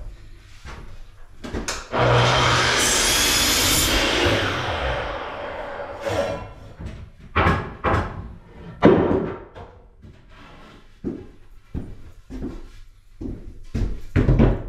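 Sliding compound miter saw starting up and cutting through a wooden trim board for about two seconds, then winding down. A series of separate wooden knocks and thumps follows as the cut board is handled.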